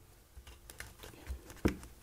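Faint handling noises as fingers and a tool work over the opened e-reader's battery and casing: light taps and rustles, with one sharper click a little past the middle.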